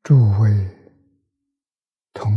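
An elderly man's voice saying one short phrase, under a second long, at the start.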